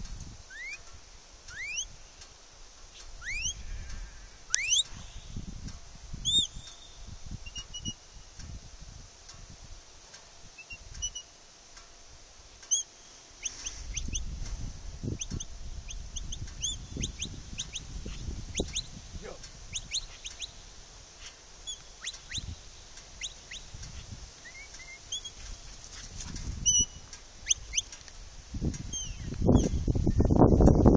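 Birds chirping: many short, rising calls scattered all through, over a low rumble of wind on the microphone that comes and goes and swells near the end.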